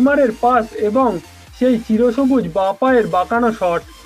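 Bengali voice-over narration, excited and fast, with background music underneath.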